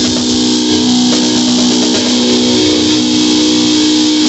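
Loud rock music in which a distorted electric guitar holds a sustained chord, with a drum kit played along by hand, snare hits and cymbal wash over it.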